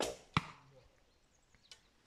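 A traditional bow shot: the string released with a sharp slap that dies away quickly, and about a third of a second later a loud crack as the arrow strikes. A faint click follows near the end.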